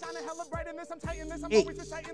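Hip hop beat with voices over it; a long deep bass note comes in about halfway.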